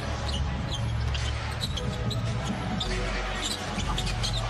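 Basketball being dribbled on a hardwood court during live play, with scattered short high squeaks and a steady arena crowd rumble underneath.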